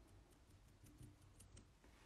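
Near silence with a few faint, light clicks and taps as a gloved fingertip dabs pigment powder onto a clear silicone nail stamper.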